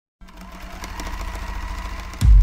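Buzzing, machine-like rattle with a fast clicking, fading in after a moment of silence and swelling in loudness: the intro sound effect of a record label's animated logo.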